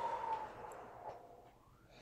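A long out-breath blown through pursed lips, a breathy hiss with a faint steady whistle in it, fading away over the first second and a half: the mouth exhale of a slow nose-in, mouth-out breathing exercise.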